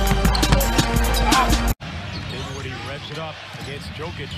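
Music with a heavy bass beat, which cuts off abruptly a little under two seconds in. After the cut comes quieter basketball game sound: a ball bouncing on a hardwood court over arena crowd noise.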